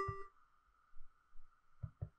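A short electronic beep at Middle G from the MakeCode editor's piano-key note picker, sounding the note just chosen. After it comes near silence with only a faint steady hum.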